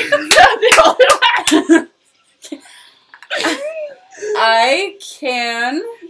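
Women laughing hard in short choppy bursts for almost two seconds. After a brief pause come three or four drawn-out vocal sounds whose pitch swoops up and down, exaggerated exclamations without clear words.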